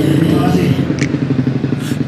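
A motorcycle engine running, over background music.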